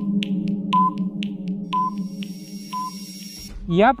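Quiz countdown-timer sound effect: rapid ticking, about four ticks a second, with three short beeps a second apart, over a steady held electronic drone. The ticks give way to a faint hiss, and the drone cuts off just before a voice starts near the end.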